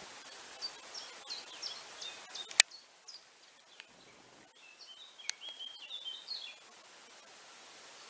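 A small songbird chirping: two runs of quick, high chirps, one in the first couple of seconds and another about five seconds in. A single sharp click cuts through about two and a half seconds in.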